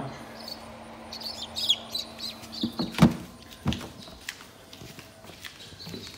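Newly hatched chicks peeping in a few short high chirps, mostly in the first two seconds. A sharp knock about three seconds in is the loudest sound, followed by a few lighter clicks and knocks.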